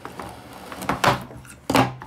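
Metal-cased hard disk drives knocking and scraping against one another as one is slid out of a pile and set down on a table. There is a louder clack about a second in and another near the end.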